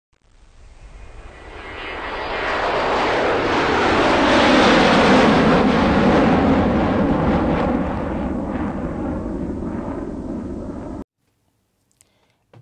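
Intro sound effect for a logo reveal: a rushing swell with a deep rumble underneath. It builds over about four seconds, slowly eases, then cuts off abruptly about a second before the end.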